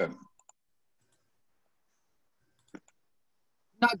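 Dead silence on a video-call audio line, broken by one short click about two-thirds of the way through; a voice trails off at the very start and another begins right at the end.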